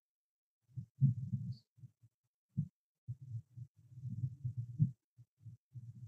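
Irregular low, muffled bumps and rumbling starting about a second in: handling noise from the recording phone or its microphone being picked up and moved.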